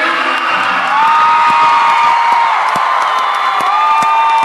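A small crowd cheering at the end of a song, with long high-pitched whoops held on one note and scattered claps.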